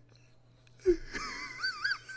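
A man's breathless, high-pitched wheezing laugh: a short catch of breath about a second in, then a thin, wavering squeal.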